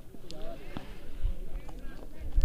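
Faint voices of cricket players calling out, with a few light clicks.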